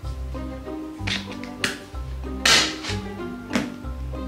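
Background music, over which a knife cuts the packing tape on a cardboard box in a few short scrapes and taps, the loudest about two and a half seconds in.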